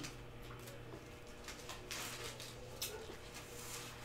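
Quiet room tone with a steady low hum and a few faint, brief rustles.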